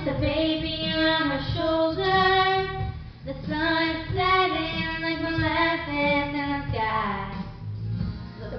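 Teenage girls singing a slow verse of a rock ballad into handheld microphones, long held notes with short breath pauses about three seconds in and near the end.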